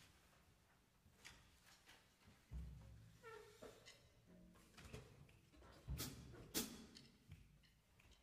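Near silence in a concert hall, with faint scattered stage noises: a low thump about two and a half seconds in, a short soft pitched note a little later, and two sharp clicks about six seconds in, the loudest sounds.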